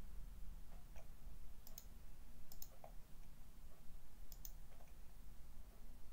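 A few light, sharp clicks, several in quick pairs, over a low steady hum.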